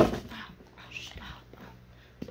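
A person's voice: a short whine falling in pitch at the start, then faint scattered quiet sounds with a brief high squeak about a second in.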